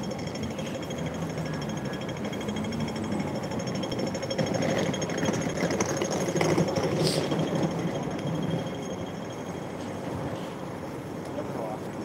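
Busy city street noise while walking over a road crossing: passing traffic and the voices of passersby, with a rapid mechanical ticking running through it.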